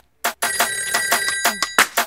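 A bell rung in a rapid trill for just over a second, its bright ringing tones held under quick repeated strikes, after a sharp click at the start and with a last loud strike near the end.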